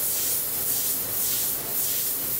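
Airbrush spraying thinned white paint: a steady hiss of air from the tip.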